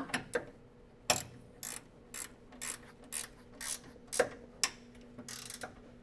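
An 18 mm ratcheting wrench clicking as a bolt is tightened by hand, in short repeated strokes about twice a second.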